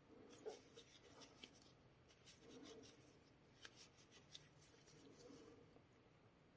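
Near silence, with faint soft rubbing and a few small ticks from a crochet hook working thick tape yarn in slip stitches.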